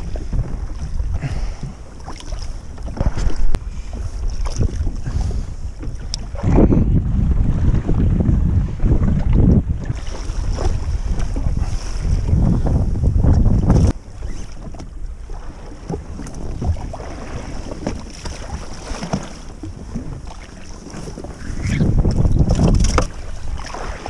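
Wind buffeting the microphone in loud, rumbling gusts over water sloshing against the hull of a jet ski, with scattered splashes as a hooked fish is brought to the surface beside it.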